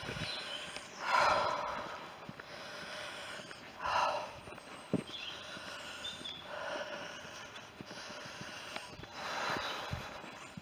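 A person breathing close to the microphone while walking: four soft, audible breaths about two to three seconds apart, with a single light knock about halfway through.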